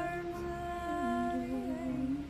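A woman humming a song in long held notes, the pitch stepping down to a lower note about halfway through.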